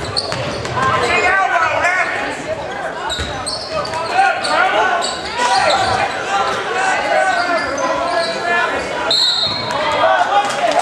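A basketball being dribbled on a hardwood gym floor, the bounces set against the steady chatter and shouting of a crowd in a large echoing gym. A short, shrill whistle blast sounds just before the end.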